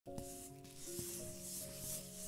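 Logo-intro sound design: a few rough, brushy swishes like paint strokes, each swelling and fading, over sustained music notes.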